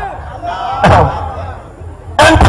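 A man's voice amplified through a handheld microphone, with one word hitting the microphone hard and sudden about a second in.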